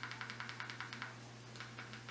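A fast, even run of light clicks, about ten a second, from navigating a Fire TV browser page with the remote. It stops a little over a second in, leaving a few scattered clicks over a low steady hum.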